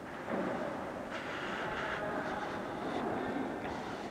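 Steady background noise with no distinct events.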